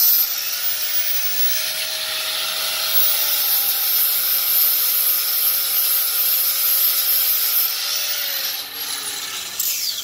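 Angle grinder with an 80-grit disc grinding the corners of a cast disc-brake caliper, a steady whine over a rasping grind, taking metal off so the caliper slides freely in its tight bracket. In the last two seconds the grinder is switched off and winds down with a falling whine.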